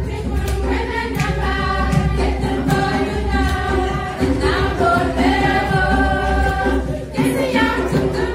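A group of voices singing an upbeat song together, choir-like, over a steady low bass, with a short break in the singing about seven seconds in.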